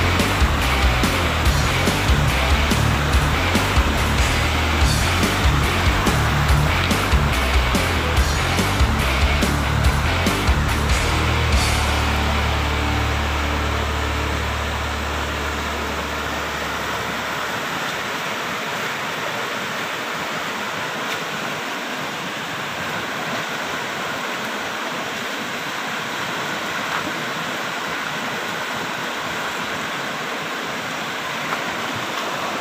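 Background music with a steady beat and heavy bass fades out about halfway through, over the steady rush of a fast-flowing rocky river, which carries on alone.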